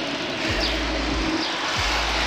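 A car coming up from behind, its engine and tyres running steadily, heard under gusts of wind rumbling on the microphone of a phone held on a moving bicycle.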